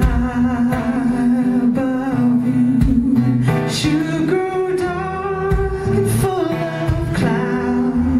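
A woman singing live into a microphone, accompanied by an acoustic guitar, holding one long note in the middle.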